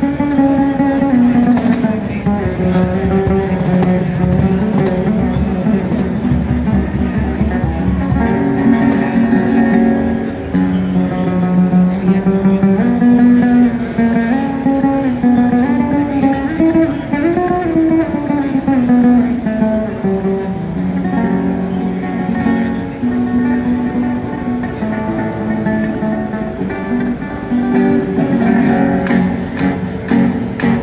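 Acoustic guitar played live with cajon accompaniment: a busy, moving melody of plucked notes over repeated hand slaps on the cajon. About halfway through, a run of guitar notes climbs and then falls back.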